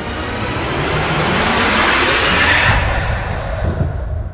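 A dramatic sound effect added in editing: a loud rumbling swell of noise that builds to a peak about two and a half seconds in, then fades.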